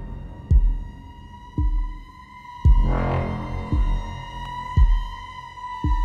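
Horror soundtrack: a deep heartbeat-like thump about once a second under a steady high droning tone, with a swelling whoosh about three seconds in.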